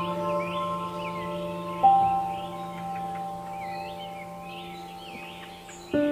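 Calm background music of ringing, bell-like mallet notes over a held low tone, with one new note struck about two seconds in and fading away slowly. Bird chirps sound high above it throughout.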